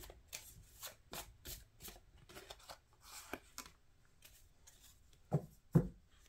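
A tarot deck being shuffled by hand: a run of light, crisp card snaps about two a second. Near the end come two louder slaps as cards are laid down on the table.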